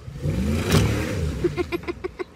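Pickup truck engine revving up as the truck pulls away under load, its pitch rising, with a loud rushing burst just under a second in.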